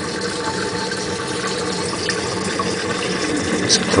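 Tap water rushing steadily through a small home-made Tesla disc turbine built from CDs, the turbine running at full water pressure, with a faint steady hum under the water noise.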